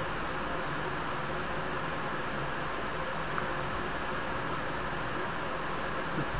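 Steady hiss of background room noise with no distinct event, and one faint tick about three and a half seconds in.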